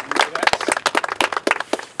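Applause from a small crowd of people clapping, thinning out and fading near the end.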